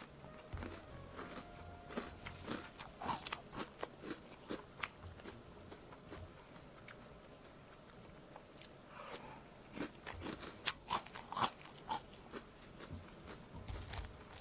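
Close-up chewing of a mouthful of microwave-crisped puffed cereal in milk, crisp crunches in two bouts with a short pause between as a second spoonful is taken.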